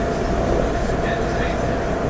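Steady background noise: a low rumble and hiss with a faint constant hum running under it.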